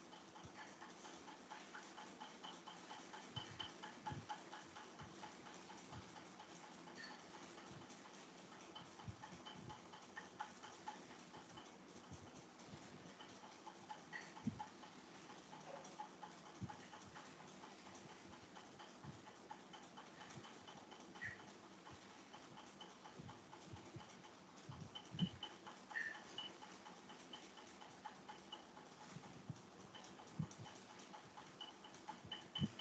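Near silence: faint room tone with scattered light, irregular clicks and ticks, one louder click about 25 seconds in.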